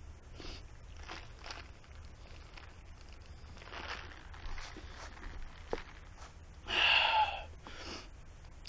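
A stopped rider breathing heavily, catching their breath after exertion, with a loud sighing exhale about seven seconds in.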